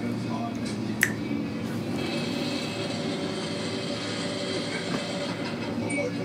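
Indistinct television sound with voices, playing steadily, with one sharp click about a second in.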